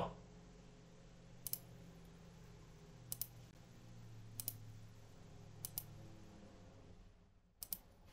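Faint computer mouse clicks: five quick pairs of clicks a second or so apart, over a low steady hum.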